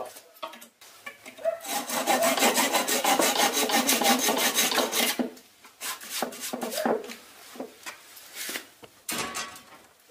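Hand pull saw with an orange handle held flat on a wooden stool seat, cutting the wedged leg-tenon ends flush with rapid back-and-forth rasping strokes for a few seconds, followed by a few lighter, scattered strokes and scrapes.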